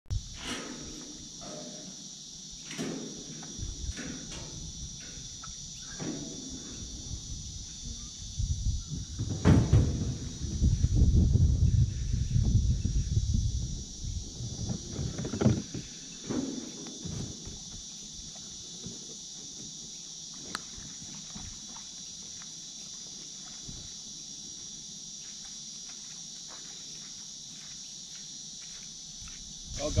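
A plastic kayak being handled off a boat trailer and into the water: scattered knocks and thumps, with a louder stretch of scraping and rumbling about ten seconds in. A steady high drone of insects runs underneath, and is nearly all that is left in the second half.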